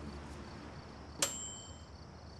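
Faint, evenly repeating insect chirping, like crickets at night. About a second in there is a single bright clink that rings briefly, like kitchenware being struck.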